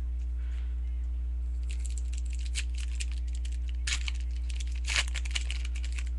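Crinkling of a trading-card pack wrapper being handled: a run of crackles, with two sharper ones about four and five seconds in, over a steady low electrical hum.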